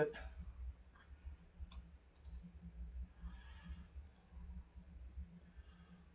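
A few faint, separate computer clicks, spread over several seconds, with a steady low hum underneath.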